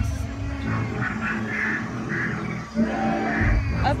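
Recorded dinosaur roars and growls from an animatronic dinosaur's loudspeakers, with a deep rumbling surge at the start and another about three and a half seconds in.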